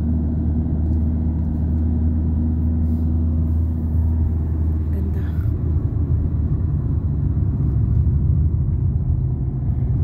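Car engine and road rumble heard from inside the cabin while driving. A steady low hum in the first half turns rougher about halfway through, with the engine note edging up toward the end.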